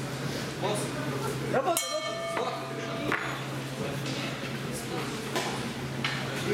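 Boxing ring bell struck once about two seconds in and ringing out for about a second, signalling the end of the round, over the voices of the crowd.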